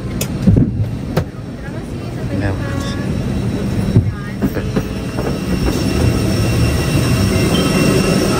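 Steady droning hum inside a parked airliner's cabin, slowly growing louder toward the open front door, with passengers' voices murmuring.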